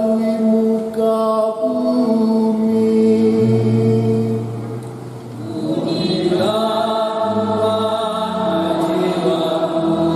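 Keyboard accompaniment playing slow, held chords to close the sung responsorial psalm; the chord changes about two seconds in, fades briefly about five seconds in, then a new chord comes in and is held.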